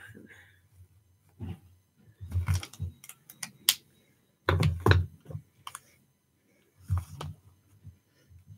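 Pens being handled on a wooden work table: irregular clicks and soft knocks in a few short clusters as one pen is set down and another picked up.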